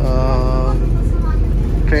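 City bus driving, its engine and road rumble heard steadily from inside the passenger cabin.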